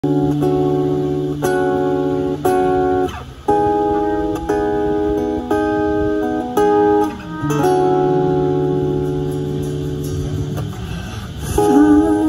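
Live band song intro: clean guitar chords struck about once a second over held bass notes, dropping out briefly around three seconds in. Near the end a new sliding melody note comes in.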